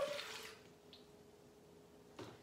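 Water poured from a glass jug into a bread machine's pan, the pour tailing off and stopping about half a second in.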